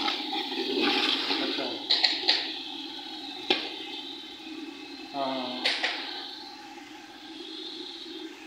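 Onion-and-spice masala sizzling and bubbling in oil in a large aluminium pot, the frying noise slowly dying down. A metal ladle clinks against the pot a few times.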